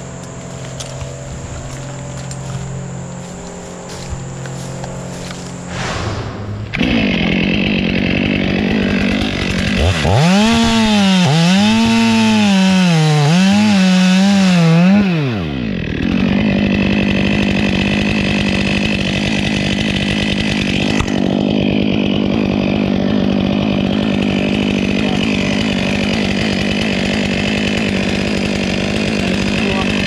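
Stihl two-stroke chainsaw idling, then opened up about six seconds in. Its pitch rises and falls several times, then it holds a steady high note while the chain cuts through a felled tree trunk.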